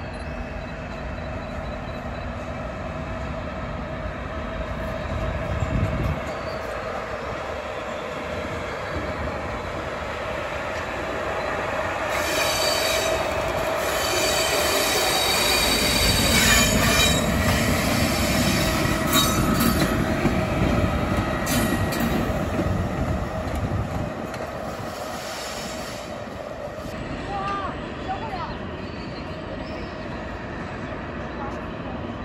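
Railway locomotive rolling slowly through station trackwork, with a steady rumble; about twelve seconds in, its wheels start a high squeal on the curves and points that lasts about fifteen seconds.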